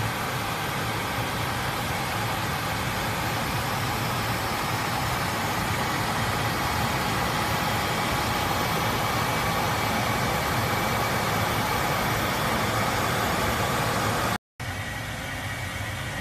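Steady rushing noise of a Bombardier CRJ regional jet's flight deck in cruise: airflow and engine noise with a low hum underneath. Near the end it cuts off abruptly and gives way to a quieter steady hum.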